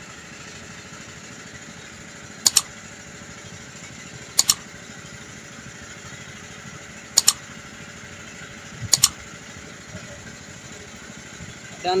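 Steady engine and water noise from a small boat under way. Four short, sharp double clicks come about two seconds apart: the mouse-click sound effects of a subscribe-button animation.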